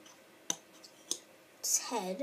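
Plastic LEGO minifigures clicking against each other and the wooden tabletop as they are set down, two sharp clicks about half a second apart, then a short hiss and a brief voice sound near the end.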